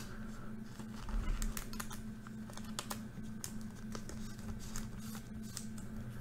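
Light irregular clicks and rubbing from fingers handling a thick trading card and its clear plastic sleeve, over a steady low hum.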